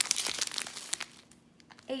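Crinkling of small clear plastic bags of square diamond-painting drills being handled: a dense run of crackles that dies away about a second in.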